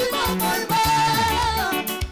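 A live worship song: a woman's lead vocal holds long, slightly wavering notes over band accompaniment with a bass line and a regular beat, with a choir singing behind her.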